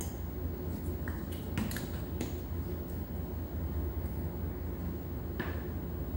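A steady low hum runs underneath a few light clicks and taps: a spoon and a small vanilla bottle being handled over a glass mixing bowl, a cluster of them in the first couple of seconds and one more near the end.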